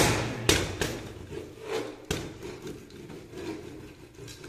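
A wooden hand sedan chair, a temple spirit-writing chair, knocking and scraping on a wooden table as it is worked in spirit-writing. There are sharp wooden knocks at the start, twice more within the first second and again about two seconds in, with rubbing in between.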